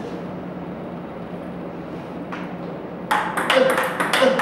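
Table tennis balls being fed and played in a multi-ball drill: after about three seconds of steady room hum with a couple of faint ball taps, a quick run of sharp clicks starts, several a second, as balls bounce on the table and are struck with bats.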